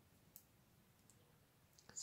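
Near silence: room tone with a few faint, short clicks, one about a third of a second in and a couple just before the end.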